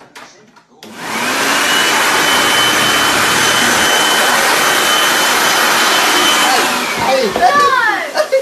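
Handheld leaf blower switched on about a second in, running loudly and steadily with a high whine as it blows toilet paper off rolls mounted over its nozzle. Near the end it winds down with a falling whine, while a voice shouts.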